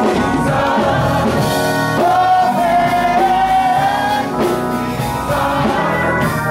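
Church congregation singing a gospel song, with one long note held from about two seconds in until past four seconds.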